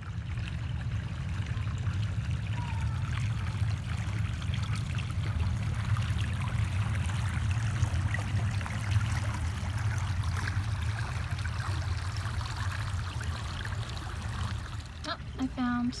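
Shallow creek water running and trickling over a rock ledge: a steady rushing wash with a low rumble under it.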